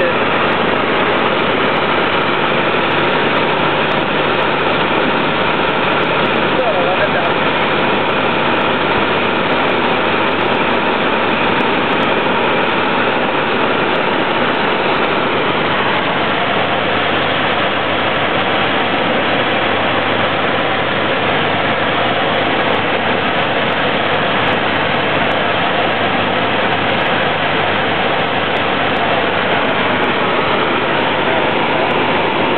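Small single-engine airplane's piston engine and propeller droning steadily, heard from inside the cockpit.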